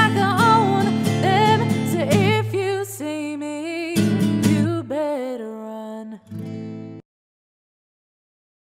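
The closing bars of a song: a female voice sings long, wavering notes over guitar chords, and the music cuts off suddenly about seven seconds in.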